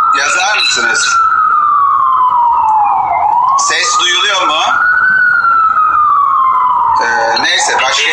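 Emergency vehicle siren wailing, its pitch sliding slowly down, back up and down again over about two seconds each way.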